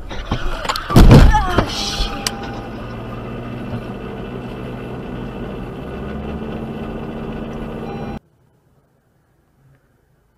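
A car collision: a very loud crash about a second in, with sharper knocks just before and after it. Steady road and engine noise from the car follows, until the sound cuts off about eight seconds in.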